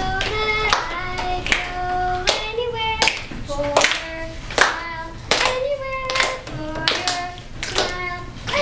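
Children singing a melody in held notes, with steady hand-clapping on the beat about once every three-quarters of a second.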